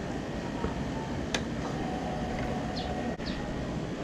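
A sharp click as the Honda CB650R's ignition key is turned on, then a faint steady hum for about a second and a half as the fuel pump primes, over a steady background hiss.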